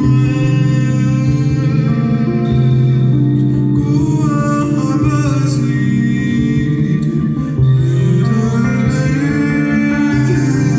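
Live music: a man singing over chords on a Roland RD-800 stage piano, with a bowed cello holding low sustained notes.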